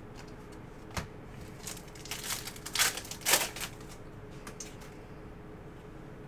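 Panini Prizm trading cards handled by hand as they are flipped through: a sharp click about a second in, then a few short swishes of the glossy cards sliding against one another.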